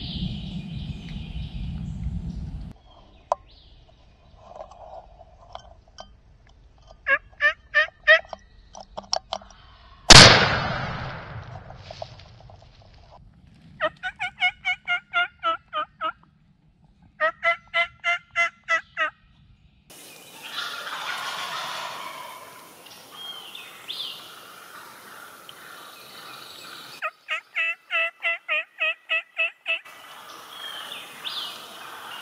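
Wild turkeys gobbling in rattling series, broken about ten seconds in by a single very loud blast from a Stevens over-and-under shotgun that rings on into the woods. The gobbling starts again twice shortly after the shot and once more near the end.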